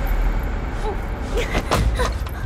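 A steady, loud rushing noise with a heavy low rumble, with brief strained vocal sounds from the struggling pair and a couple of sharp knocks about one and a half seconds in.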